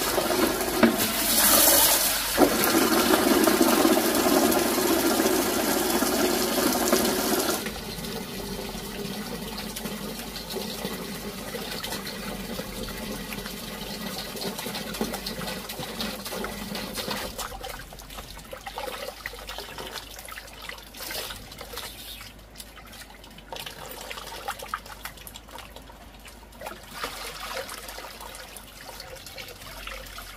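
Water poured from a plastic scoop into a plastic basin, a loud steady rush for the first seven seconds or so, then hands swishing and splashing water while washing weed in a plastic basket, the splashing growing quieter and more scattered toward the end.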